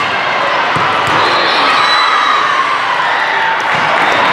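Steady din of many voices echoing in a large sports hall, with a few thuds of volleyballs being hit or bouncing about a second in.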